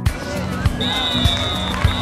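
Electronic background music with a steady kick-drum beat, mixed with live match sound and voices.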